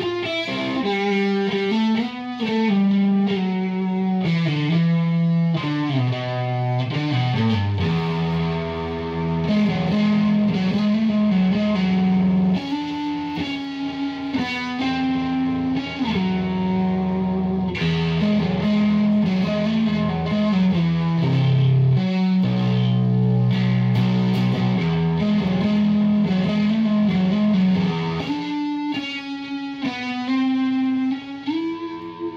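Electric guitar played through a Satori pedal into an amp, a distorted riff of changing notes, in a tone the player finds dark, with little treble or high end.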